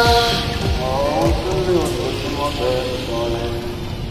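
A man's melodic Islamic chanting from a mosque loudspeaker: long held notes that slide and bend in pitch, in a few phrases with short gaps.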